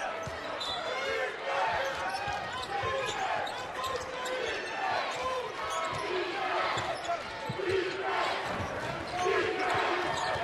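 Live basketball game sound from courtside: a ball dribbled on the hardwood court, with shouting and chatter from players, benches and crowd echoing around the arena.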